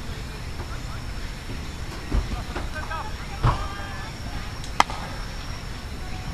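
Brief voices a couple of seconds in, then a single sharp smack of the pitched baseball arriving at home plate about five seconds in.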